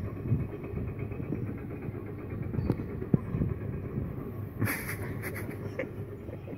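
A vehicle engine idling with a steady low rumble, with a few light knocks and a short burst of rustling about two-thirds of the way through.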